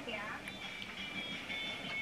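Faint television playing in the room: indistinct voices and music.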